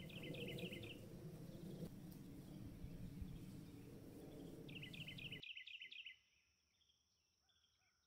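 Outdoor ambience: a low rumble of wind noise with a small bird calling in short, rapid chirping phrases near the start and again about five seconds in. About six seconds in the sound drops off to near silence, with only faint bird calls left.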